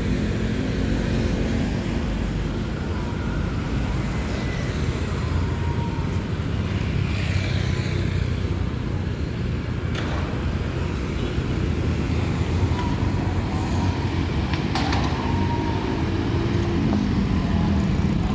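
Steady road traffic noise, with car and motorbike engines running past in a continuous low rumble.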